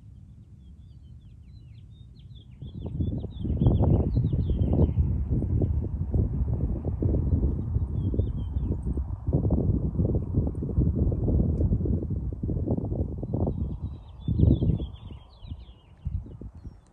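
Small birds chirping and twittering in the park trees. From about three seconds in, a loud, irregular low rumble of wind buffeting the microphone covers them, dying away just before the end.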